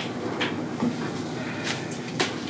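Cut flower stems and foliage being handled on a worktable: rustling with a few light knocks and clicks.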